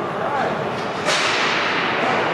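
Inline hockey game ambience in a large, echoing hall: faint players' voices, then a sharp crack about a second in followed by a steady hiss.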